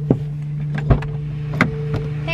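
Inside a stopped car's cabin: a steady low hum, with three sharp clicks or knocks spaced about a second apart.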